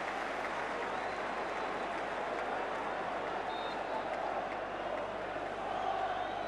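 Football stadium crowd: a steady wash of crowd noise and applause from the stands.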